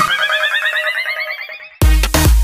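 Electronic dance remix breakdown: the bass and drums cut out, and a rapidly repeated synth figure rises in pitch while fading and growing muffled. Heavy bass and kick drum crash back in just before the end.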